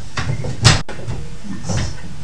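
Antique wooden yarn winder (clock reel) turned by hand, giving one sharp wooden click a little past half a second in: the click that marks 40 yards of yarn wound into a skein. Softer wooden knocks follow near the end.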